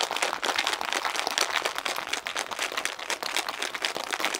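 Cocktail shaker shaken hard and fast, its contents rattling in a continuous rapid clatter. The espresso martini is being shaken to whip it into foam.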